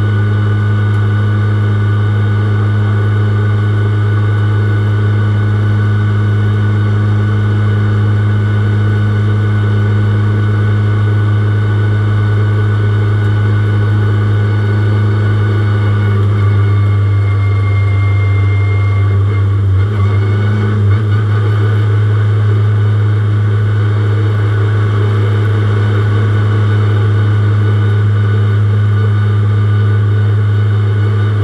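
Ferrari 488 GT3's twin-turbo V8 running at a steady, low engine speed, heard from inside the cockpit. About two-thirds of the way through the note changes slightly and there are a few short knocks as the car comes to a stop.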